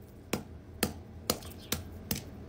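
Hammer striking ice on a concrete floor: four sharp, light blows about half a second apart.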